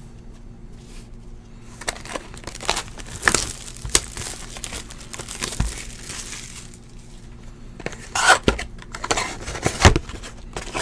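A sealed trading-card hobby box being torn open, its wrapping and cardboard crackling and crinkling in irregular bursts, with the foil packs inside rustling; the loudest tearing comes near the end.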